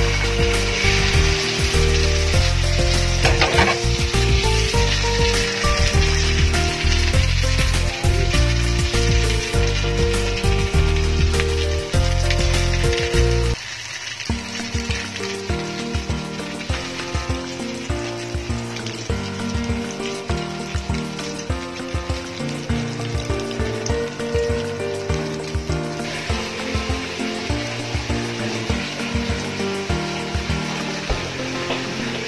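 Eggplant omelette (beaten egg over eggplant) frying in hot oil in a wok, with a steady sizzle. Background music plays over it, and its heavy bass drops out about halfway through.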